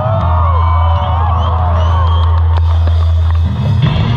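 Live hardcore band playing loud through an outdoor PA, holding one low note for about three seconds while the crowd whoops and yells over it. The note cuts off about three and a half seconds in and the full band comes back in.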